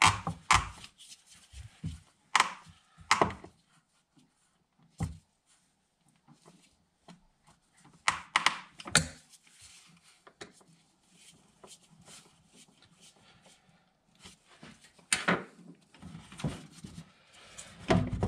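Plastic air filter housing and intake hose being handled and pushed into place: scattered knocks and clicks, with a few louder thunks about a second in, twice around two to three seconds, twice around eight to nine seconds and once near fifteen seconds.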